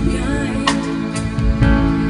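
Live band playing a slow ballad, holding steady chords with three or four sharp drum hits, and a woman's singing voice faintly in the mix.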